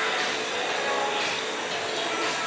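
Steady background hum and hiss of a café's room noise, with no sharp clinks or knocks.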